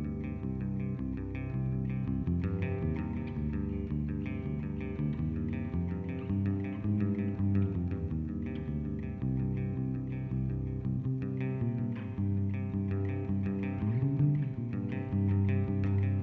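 Instrumental intro of a rock band's studio recording: electric guitar with effects playing a repeating riff over bass guitar, with no vocals.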